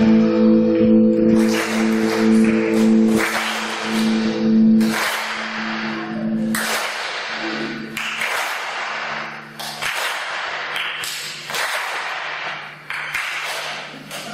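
Live band playing an instrumental passage without vocals: a held chord that dies away about five seconds in, then chords struck roughly every second and a half, each ringing out.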